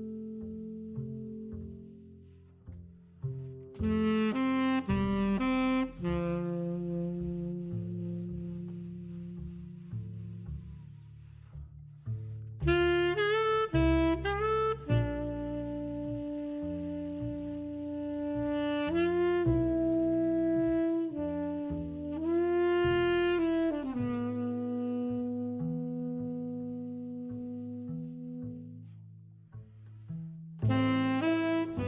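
Background music: a lead melody instrument holds long notes and slides up between some of them over a bass line.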